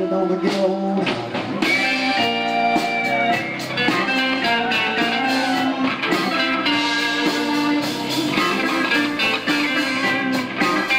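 Live blues-rock band playing an instrumental passage without vocals, with electric guitar, keyboard, bass and drums.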